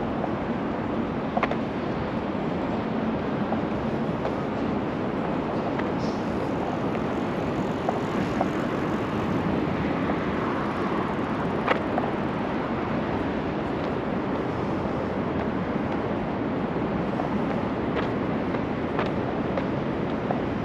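Steady outdoor background noise with no clear single source, broken by a few faint clicks.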